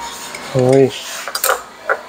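A short hummed vocal sound with a wavering pitch about half a second in, then a few sharp clinks of a spoon and chopsticks against a bowl and dishes while eating, the last just before the end.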